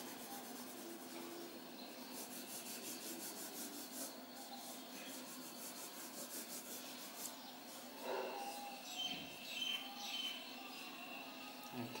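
Faint scratching of a coloured pencil shading back and forth on paper.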